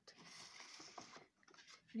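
Faint rustle of paper cubes being slid and pushed together on a wooden table for about a second, with a couple of light taps, then near silence.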